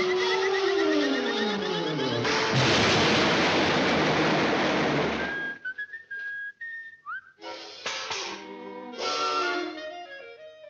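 Cartoon sound effects: a falling whistle that drops in pitch over about two seconds over the orchestral score. Then comes a loud crash of noise lasting about three seconds, the impact of a fall into the ground. After a short, nearly empty pause with a brief rising chirp, the orchestral score returns.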